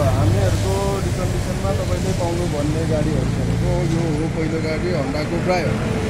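A man talking, over a steady low rumble of road traffic.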